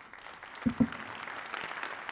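Audience applauding, the applause starting and building, with two low thumps just under a second in.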